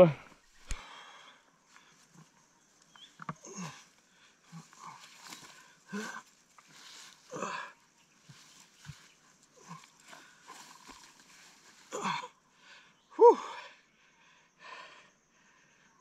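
A man grunting and breathing hard with effort as he heaves the heavy horned head of a dead water buffalo about in dry grass. Scattered short handling and rustling noises run throughout, with the loudest grunts about 12 and 13 seconds in.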